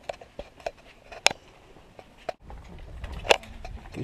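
Footsteps on paving and knocks from a handheld camera being carried while walking: irregular sharp clicks, the loudest a little over a second in and again about three seconds in, with a low rumble in the second half.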